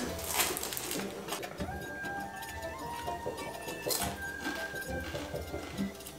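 Soft background music with sustained notes, and three crisp crunches as a knife cuts through the crunchy pan-fried crust of a yufka cheese börek.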